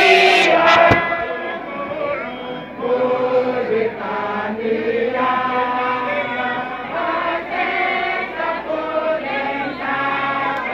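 A group of voices singing together in a chant-like song, with long held notes.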